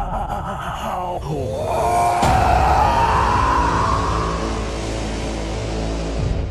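Horror trailer score and sound design: a falling pitch glide about a second in, then a sudden hit at about two seconds that opens into a sustained, swelling high drone over a low rumble.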